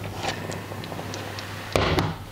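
Rhubarb simmering in sugar syrup in a copper pot, with a scatter of small popping bubbles over a steady low hum. A louder knock comes near the end.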